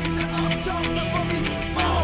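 Rock music mashup with no vocals: electric guitar and sustained instrument lines over a steady drum beat. A heavier bass comes in near the end.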